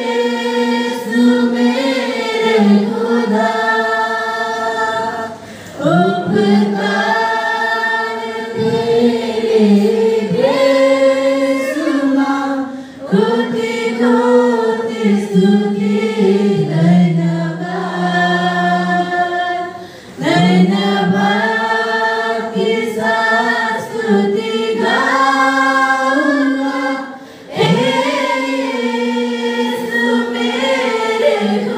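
Mixed youth choir singing a Hindi Christian worship song unaccompanied, in sung phrases of about seven seconds with brief breaks for breath between them.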